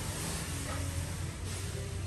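Steady café room noise: a constant low hum under an even hiss.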